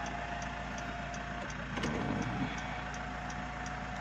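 Electric sunroof motor of a Mitsubishi Pajero Sport Dakar running with a thin steady whine that stops about a second and a half in, over a low steady hum with light, regular ticking.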